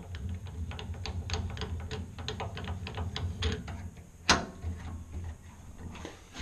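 Rapid, irregular metallic clicking and rattling as the upper blade guard and rip fence of a Grizzly G0513 bandsaw are adjusted, with one sharp clank about four seconds in, over a steady low hum.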